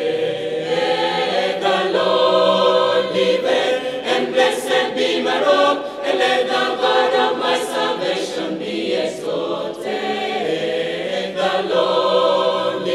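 Mixed choir of men's and women's voices singing a hymn together, with notes held and moving in harmony.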